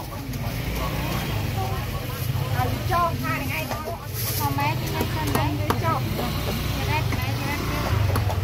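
Open-air market ambience: people talking over a steady low rumble of motor traffic.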